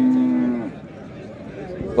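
A calf bawling: one long, steady call that ends less than a second in, followed by low market background.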